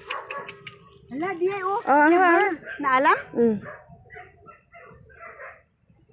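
A dog whining and yelping, with several drawn-out, wavering cries between about one and three and a half seconds in, then fainter sounds.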